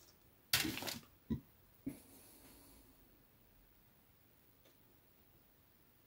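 Plastic model-kit sprues being handled: a short rustle and clatter about half a second in, then two light clicks of plastic on plastic, after which only quiet room tone.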